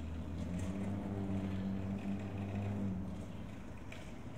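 A motor vehicle's engine humming at a steady low pitch, fading out about three seconds in.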